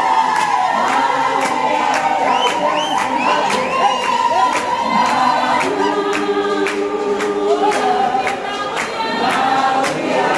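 A group of voices singing a gospel song together in chorus, with hand clapping in time, about two claps a second. A few short high calls ring out over the singing about two to three seconds in.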